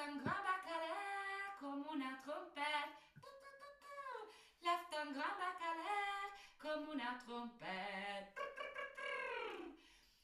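A woman singing a children's action song unaccompanied, in short phrases with brief breaks.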